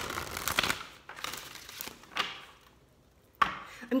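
Papery rustling and flicking as the pages of a small card booklet or deck are riffled and handled, dense at first and then thinning to a few flicks. A single sharp tap comes a little before the end.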